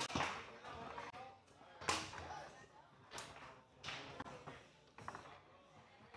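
Foosball table in play: about five sharp knocks and cracks as the ball is struck by the men on the rods and hits the table, the loudest about two seconds in.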